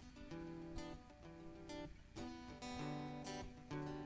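Acoustic-electric guitar strummed alone, a handful of chords left to ring between strokes: the opening of a song.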